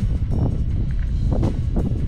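Wind buffeting the microphone, a heavy uneven rumble, with soft background music under it.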